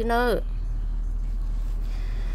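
A voice singing Hmong kwv txhiaj ends a long held, wavering note, which falls away about half a second in. A steady low hum follows until the next phrase.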